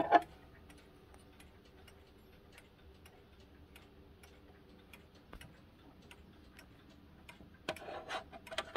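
Howard Miller Regulator wall clock's pendulum movement ticking steadily and faintly, with a few louder knocks near the end.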